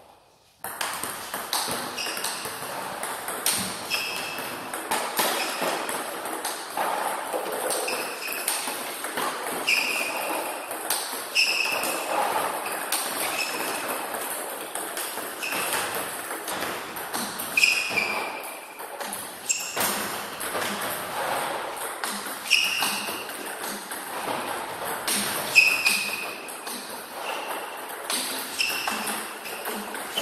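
Celluloid-type table tennis balls struck hard and fast by a paddle and bouncing on the table: a quick, uneven run of sharp clicks and short pings, several a second, starting about half a second in.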